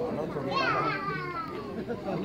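A child's high-pitched, drawn-out call that rises briefly and then slides down in pitch over about a second, over the chatter of a crowd.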